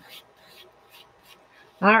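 Faint scratching of a soft-lead pencil drawing short strokes on paper, which stops near the end.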